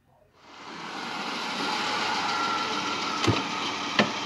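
Recorded street traffic ambience fading in about half a second in and then holding steady as a noisy rush of vehicles, with a short click about three seconds in.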